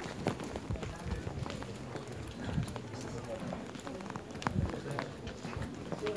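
Footsteps on a hard floor while walking, irregular sharp taps, over the indistinct chatter of many people in a large, busy hall.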